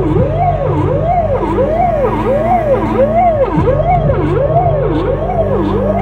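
Electronic vehicle siren wailing, its pitch sweeping up and down about twice a second.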